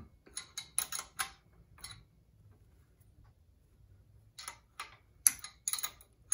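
Light, sharp metallic ticks from a thin steel rod turning a nut on the bead roller's bearing-block bolt, the rod knocking against the nut and bracket: a quick run of ticks over the first two seconds, a pause, then another run from about four and a half seconds in.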